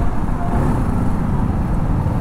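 A BMW G 310 R's single-cylinder engine running steadily on its stock exhaust while riding in traffic, heard from the rider's seat and mixed with road and wind noise.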